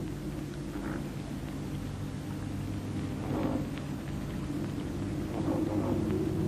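A few faint, short croaks of common ravens over a steady low hum.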